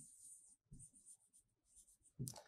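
Faint scratching of a pen writing on a board, in short broken strokes, barely above near silence.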